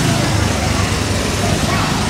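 Small gasoline engines of Autopia ride cars running as the cars drive along the track, a continuous low rumble.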